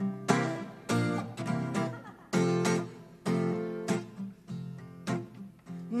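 Acoustic guitar strumming several ringing chords, the instrumental introduction to a French chanson just before the singing begins.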